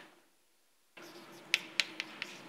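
Near silence for about the first second, then two sharp clicks about a quarter second apart near the end: chalk tapping onto a blackboard as writing begins, over a faint steady room hum.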